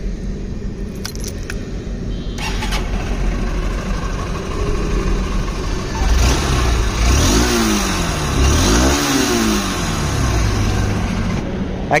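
Honda Unicorn 160's 162.7 cc single-cylinder fuel-injected engine running through its stock exhaust: it idles steadily, then is revved up and let fall back twice in the second half. The exhaust note is refined.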